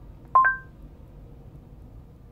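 Android Auto's Google voice-search chime: two short electronic beeps in quick succession, the second higher, about a third of a second in. It signals that the spoken destination query has been taken. A faint steady cabin hum runs underneath.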